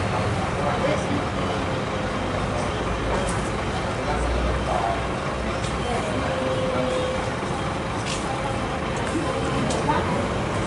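Bus terminal ambience: a bus engine running with a steady low rumble, and voices talking in the background.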